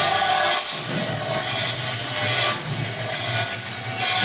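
Continuous metallic ringing and jangling of temple bells and cymbals, with a low pulsing beat underneath, the accompaniment of a Hindu evening aarti.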